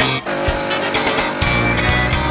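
Music with guitar.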